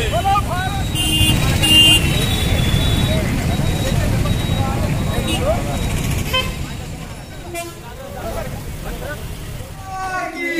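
Street crowd noise over a steady traffic rumble, with scattered voices; two short vehicle horn toots about a second in.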